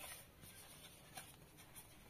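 Faint rubbing and scraping of a white cardboard packet from a smartphone box as hands turn it over, with a few soft brushing strokes.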